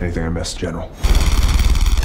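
Film soundtrack: a man's voice briefly, then about a second in a sudden loud, low mechanical rumble with a rapid even rhythm, like a running engine.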